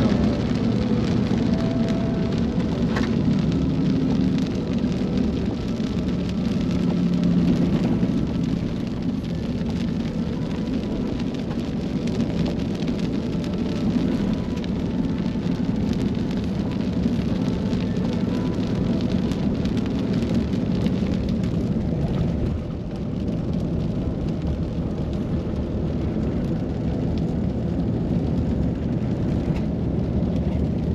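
Steady low rumble of a Ram pickup towing a caravan over a rough, wet dirt road, heard from inside the cab: tyre and road noise mixed with engine drone.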